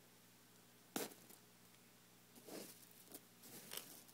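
Near silence broken by a sharp click about a second in, then a few brief soft crackles in the second half: fingers disturbing dry rolled oats in a plastic tub.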